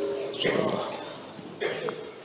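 A man's short cough into a handheld microphone, between spoken words.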